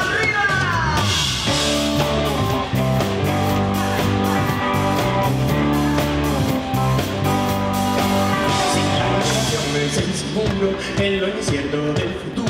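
Live rock band playing an instrumental passage: electric guitars and bass over a steady drum beat, with a sung note sliding down near the start.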